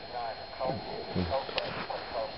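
Faint speech from a person further off, softer than the main talk, with one short click about one and a half seconds in.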